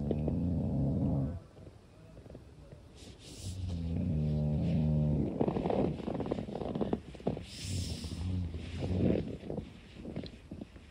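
A person snoring: three long, low snores a few seconds apart. Between the snores a Therm-a-Rest sleeping pad squeaks and crackles.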